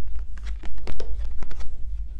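A deck of large oracle cards being shuffled by hand, giving irregular soft flicks and slaps of card against card over a steady low hum.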